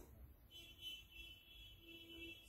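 Near silence in a quiet room, with a faint, steady, high-pitched tone that starts about half a second in.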